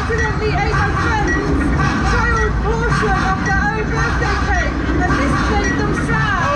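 A voice talking through an outdoor stage public-address system, with a steady low rumble underneath.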